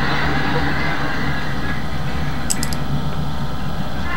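A steady low hum with background noise, broken by three quick faint clicks about two and a half seconds in.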